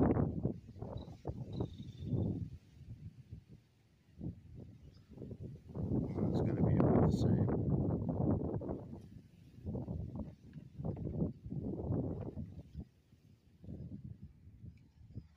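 Wind buffeting the microphone in irregular gusts, with the longest and loudest gust a little before the middle.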